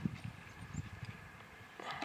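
Faint, irregular low knocks and handling sounds as a metal engine crankcase cover is moved and set down on cardboard.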